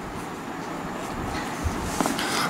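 Steady background noise, an even hiss, with one faint low thump about one and a half seconds in.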